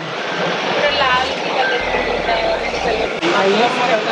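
Indistinct background voices and chatter in a busy shop, over a steady bed of noise, with no clear speaker in front.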